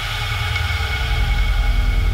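Held low bass rumble under a sustained synth chord: the ringing-out final hit of a TV sports network's ident jingle.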